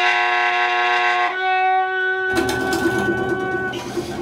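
Free-jazz trumpet holding long, steady notes over double bass, shifting pitch about a second in. About two seconds in, the drums come in with a dense wash of cymbals and rapid strokes under the held tones.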